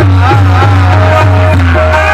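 Live qawwali music: harmoniums playing a held note under a man's wavering sung line.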